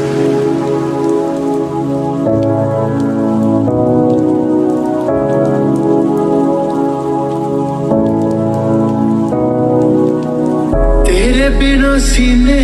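Recorded rain falling on a window, a steady hiss, laid over the slowed, reverb-heavy instrumental break of a song: sustained chords change about every one and a half seconds, with no bass. Near the end the bass and a singing voice come back in.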